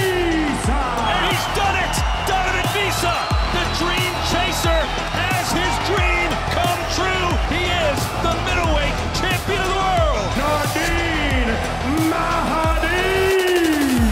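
Background music with a steady beat and a wavering, voice-like melody that slides up and down in pitch.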